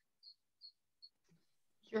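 Four faint, short, high ticks about 0.4 s apart in near quiet, then a voice starts just before the end.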